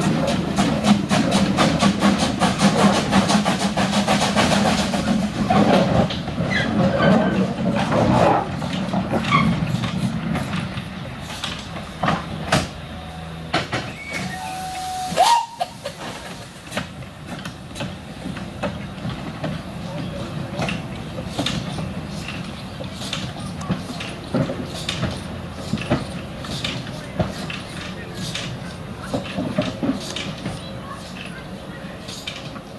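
Henschel Monta narrow-gauge steam locomotive working with its train: dense, rapid exhaust beats and steam hiss in the first few seconds. After a short high tone about halfway, the sound turns to scattered knocks and hiss as the engine rolls along the track.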